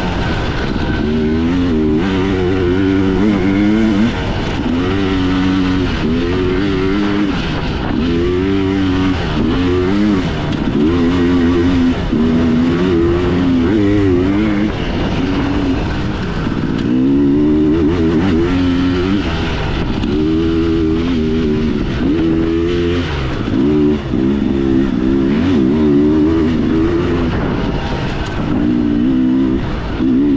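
Two-stroke dirt bike engine under race throttle, its pitch climbing hard and dropping again and again as the rider accelerates, shifts and backs off for the turns. Heard close up from on the bike.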